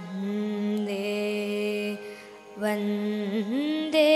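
A girl's voice singing a slow, melodic chant into a microphone in long held notes. It pauses briefly about two seconds in, and the next phrase slides up to a higher note near the end.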